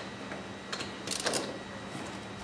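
A few faint metallic clicks from a hand wrench being fitted and worked on a quad's wheel nut, over quiet room tone.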